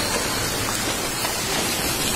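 Steady rushing noise of a landslide, with earth and mud sliding down a steep slope into a muddy pit.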